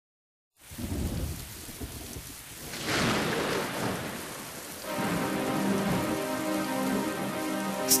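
Rain and thunder sound effect opening a song: a low thunder rumble starts about half a second in, the rain swells louder about three seconds in, and sustained chords come in about five seconds in over the continuing rain.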